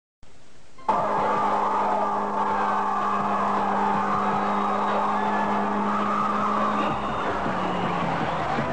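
A car doing a burnout, starting abruptly about a second in: the engine held at steady high revs while the tyres squeal and spin. It eases off near the end.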